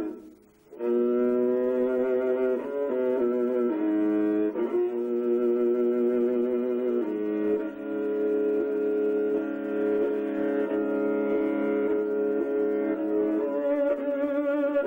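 Kyl-kobyz, the Kazakh two-stringed horsehair fiddle, being bowed. After a brief pause at the start it plays sustained notes rich in overtones, stepping between pitches in the first seven seconds, then holding a long steady note.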